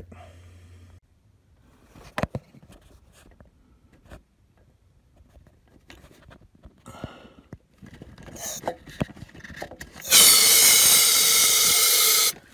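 Can of compressed air blasting through a thin tube stuck down a spark plug well to blow out debris that fell in: a loud, steady hiss that starts near the end, after several seconds of light clicks and knocks from handling.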